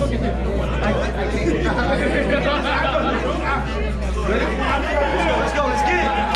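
Crowd chatter: many people talking over one another in a large hall, over a steady low hum.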